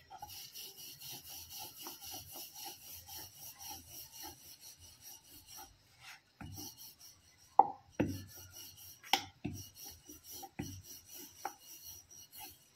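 Wooden rolling pin rolling back and forth over stuffed flatbread dough on a wooden rolling board: a quick, even run of rubbing strokes. After the middle the strokes give way to a few louder wooden knocks and thuds as the dough is pressed by hand and the rolling pin is handled.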